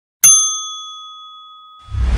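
Bell 'ding' sound effect for a subscribe-button animation: one bright bell strike about a quarter of a second in, ringing on and slowly fading. Near the end a rushing whoosh starts.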